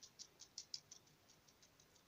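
A degu chewing a piece of cucumber: faint, quick crunching clicks, several a second, that grow fainter about halfway through.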